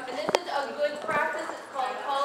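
Dogs' claws clicking on a hard floor as they run and play, a few sharp taps in the first half second, with people's voices over them.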